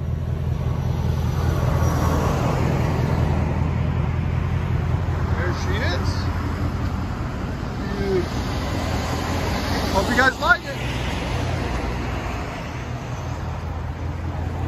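Ford Mustang Mach 1's 5.0-litre Coyote V8 idling steadily through an aftermarket resonator-delete mid-pipe and the factory active-exhaust mufflers: a deep, even exhaust burble.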